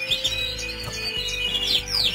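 Nest of canary chicks, a few days old, begging with many rapid high cheeps.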